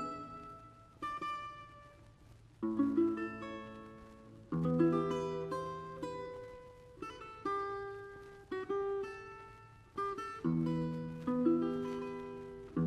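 Russian seven-string guitar playing a slow solo passage of plucked chords and short note runs, each chord struck and left to ring and die away before the next, roughly every one to two seconds.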